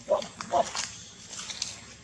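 Macaque giving two short, sharp calls, one just after the start and one about half a second in.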